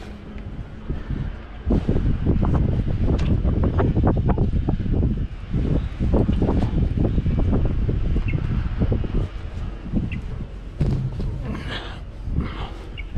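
Close rustling and knocking of clothing and a boot being handled right against a body-worn camera's microphone. It is a dense, uneven low rumble from about two seconds in until about ten seconds.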